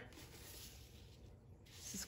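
Near silence, with a faint rustle of a plastic ruler being slid and repositioned on paper, mostly in the first second.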